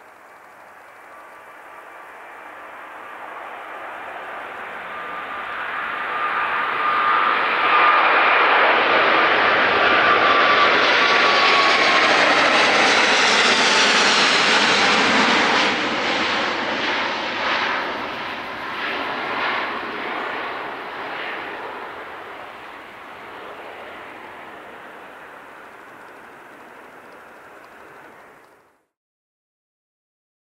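Airbus A350-900's Rolls-Royce Trent XWB jet engines at takeoff power. The sound grows steadily louder as the aircraft rolls, lifts off and passes close overhead, with a whine that drops in pitch as it goes by. It then turns to a crackling rumble that fades as the jet climbs away.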